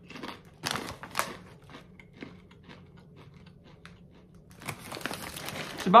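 Biting into a hollow pretzel shell: two sharp crunches about a second in, then chewing with small crisp crackles. Near the end a plastic snack bag crinkles.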